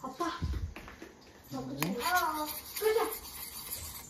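A child's voice vocalizing in short bursts without clear words, with a low bump near the start and a single sharp click a little before the middle.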